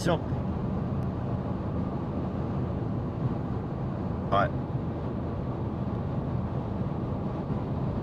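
Steady low driving noise of a moving car, road and engine, heard from inside the cabin.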